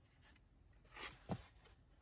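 Near silence with faint handling of card file folders: a soft paper rustle and one brief light sound a little past the middle.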